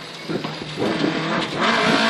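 Engine of a rear-wheel-drive Toyota Corolla rally car heard from inside the cabin, running off the throttle while slowing for a chicane and shifting down from third to second gear. It grows louder as the revs pick up near the end.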